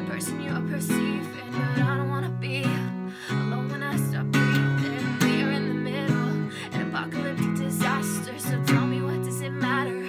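Acoustic guitar strummed steadily through a series of chord changes, with a woman singing over it.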